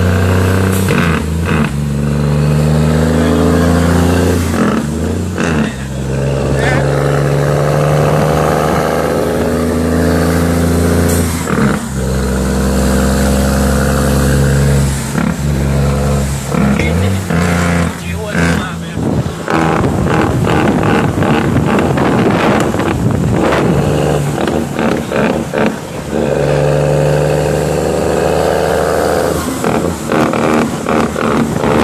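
Cummins L10 diesel engine of a straight-piped Leyland truck, heard from inside the cab while driving: a loud, steady engine note that shifts in pitch and breaks off briefly several times, with a rougher, choppier stretch about two-thirds of the way through.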